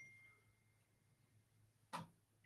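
Near silence: room tone, with a faint short ding at the very start.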